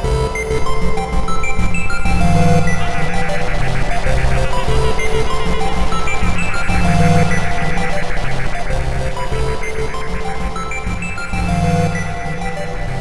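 Instrumental electronic music played on synthesizers: a pulsing bass line repeating under stepping synth lead notes, with no vocals.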